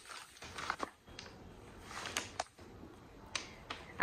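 Faint rustling and a few light ticks of a paper note card being taken out and handled.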